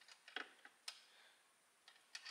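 A few faint, short metallic clicks of small hand tools, a feeler gauge and valve-adjuster tool, being handled on the generator engine's valve rocker and adjuster.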